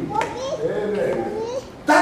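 Speech only: a fairly high-pitched voice talking, with no other sound.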